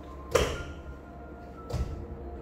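Two sudden thuds about a second and a half apart, the first the louder, over faint steady tones.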